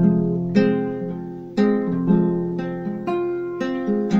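Acoustic guitar strumming chords that ring out, a new chord struck about every half second to a second.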